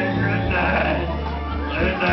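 A man singing karaoke into a microphone over a recorded backing track, his voice wavering up and down in pitch.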